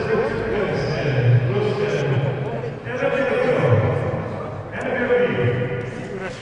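Speech: voices talking throughout, with no other clear sound standing out.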